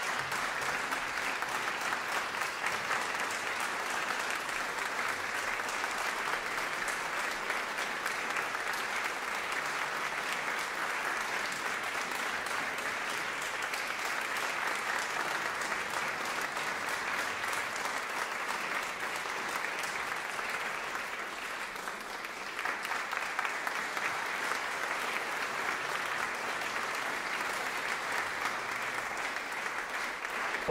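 Audience applauding steadily, thinning briefly about two-thirds of the way through and then picking up again.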